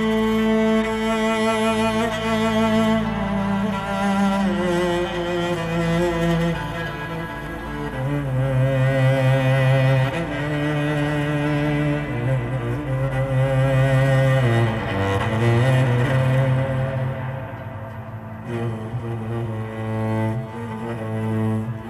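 Cello playing a slow melody of long bowed notes with vibrato.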